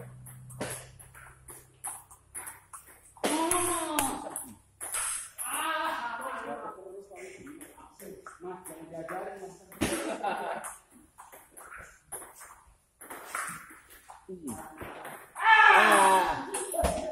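Table tennis rally: the ball clicking sharply off paddles and table in quick exchanges, with men's voices talking and calling out between shots and a loud shout near the end.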